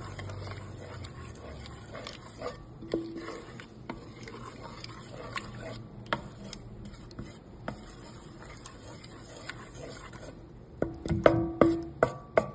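Spoon stirring shredded cheese into a milk sauce in a pot, with scattered clicks and taps of the utensil against the pot and a quick run of louder taps near the end.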